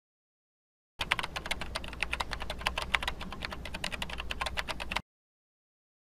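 Computer keyboard typing sound effect: rapid, uneven key clicks that start about a second in and cut off suddenly about four seconds later.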